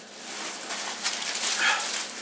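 Plastic grocery wrapping crinkling and rustling as items are pulled out of a fabric backpack, with irregular scratchy rustles.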